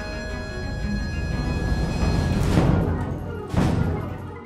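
Contemporary chamber ensemble playing: thin held high notes over a low drum rumble that swells, with loud percussion strikes about two and a half seconds in and again near the end.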